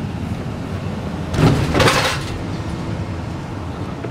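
Steady low rumble of road and engine noise inside a moving car's cabin. About a second and a half in comes a brief, louder burst of noise.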